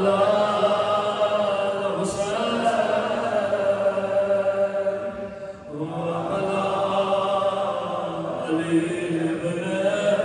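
Devotional chanting in long, drawn-out notes that echo in a large hall, with a short break about five and a half seconds in before a new phrase begins lower.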